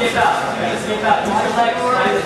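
Indistinct talking from onlookers around the ring, with no clear words.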